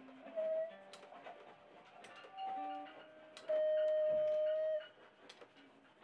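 Sparse music from a small band: three separate high sustained notes, the longest and loudest held about a second and a half near the middle, over faint lower notes and a few light clicks, with quiet gaps between.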